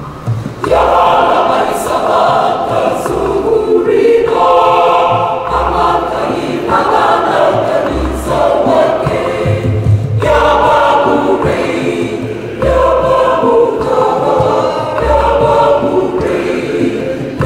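Mixed church choir of men and women singing a communion song in parts, coming in strongly about half a second in after a brief pause. A low bass note recurs every two to three seconds beneath the voices.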